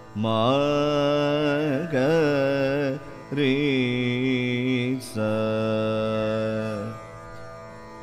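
Male Carnatic vocalist singing ragam (alapana) in Shankarabharanam on open vowels, without words. He sings three phrases of long held notes with wavering gamaka ornaments, then pauses near the end.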